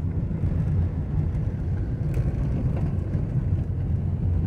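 A vehicle driving along an unpaved dirt road: a steady low rumble of engine and tyres.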